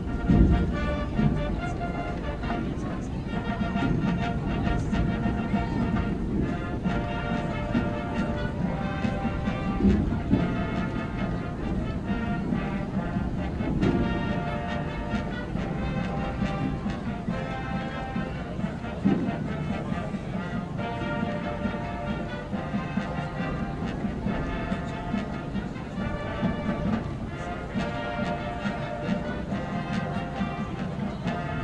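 High school marching band music: sustained brass chords over drums, changing about every second, opening with a loud hit.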